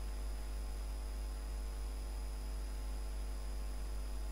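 Steady low mains-type electrical hum with faint hiss and a thin, steady high whine: the recording microphone's background noise, with nothing else happening.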